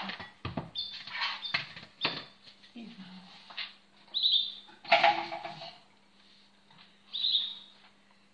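A small bird chirping in short bursts of quick, high, falling notes, twice repeated as a little run of three, mixed with clicks and rustles of things being handled on the table. A steady low hum runs underneath.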